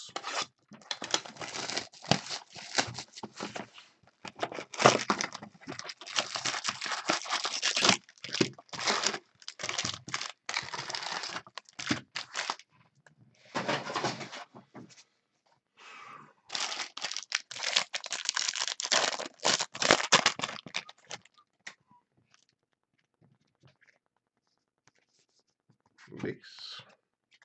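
Tearing and crinkling of trading-card packaging as a 2016 Bowman Draft jumbo box is opened and its foil packs handled. It comes in a long run of noisy bursts that stops about five seconds before the end.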